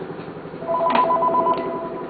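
Office desk telephone ringing: an electronic trill of two tones warbling together for about a second, starting under a second in. Underneath, a jackhammer rattles steadily in the background.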